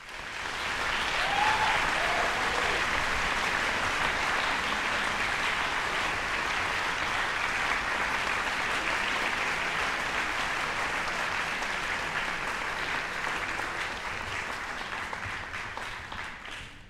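Concert-hall audience applauding steadily, the applause tapering off near the end.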